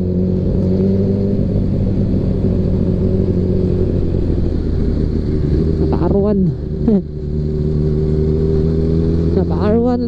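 Yamaha NMAX 155 scooter's single-cylinder engine running at a steady cruise, its pitch holding even, with wind noise on the microphone.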